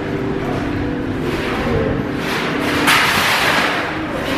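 Rustling and brushing of hair and clothing against a handheld camera's microphone, coming in a few rushing surges, the loudest about three seconds in, over a steady background hum.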